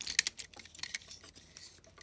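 Plastic parts of a Transformers Animated Blitzwing figure clicking and knocking as its legs are pulled out and handled. A cluster of sharp clicks comes near the start, then scattered lighter ones.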